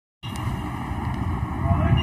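A steady low rumble and hiss begins just after the start, and a voice starts singing near the end, the opening of a devotional bhajan.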